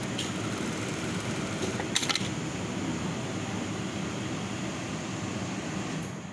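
Industrial single-needle sewing machine running steadily while stitching neck tape onto jersey fabric, with a sharp click about two seconds in.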